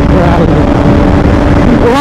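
Bajaj motorcycle under way: loud, steady wind and road rush on the microphone with a constant engine hum. A voice talks briefly at the start and again near the end.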